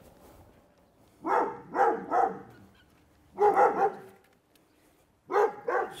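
A dog barking in short groups: three quick barks about a second in, one more at about three and a half seconds, and two near the end.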